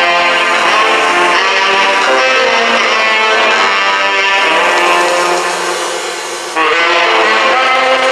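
Jazz quartet of tenor saxophone, piano, double bass and drums playing live: piano under long held melody notes. The level dips briefly, then a new phrase comes in sharply near the end.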